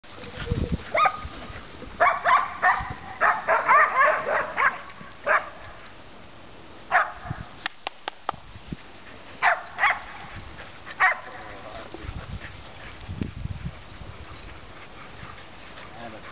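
Dogs barking in a pack: a quick run of many barks a couple of seconds in, then single barks spaced out over the following seconds.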